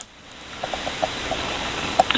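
Steady hiss of audio-line noise, such as a phone or remote guest feed left open. It rises in over the first half second and then holds steady, with a few faint short tones about a second in.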